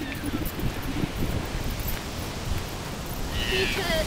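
Wind rumbling on a handheld camera's microphone outdoors, with faint voices in the background. A brief high-pitched sound comes near the end.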